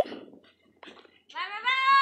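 A child's voice: one drawn-out call that rises in pitch and lasts under a second, in the second half.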